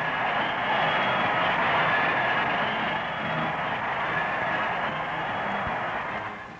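Large football stadium crowd cheering steadily, with no break in the noise.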